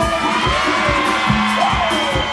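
Live Latin dance band music with a steady beat of bass and percussion, and a crowd of many voices shouting along loudly over it.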